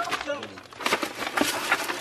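Brief indistinct voices, then a run of rustling clicks from about a second in.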